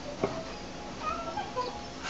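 A faint, high-pitched recorded voice playing back from a mic recording in the animation editor, heard off the computer's speakers. There is a short click just after the start.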